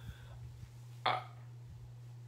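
A pause in a man's talk: a steady low hum, with one short throat or breath sound about a second in.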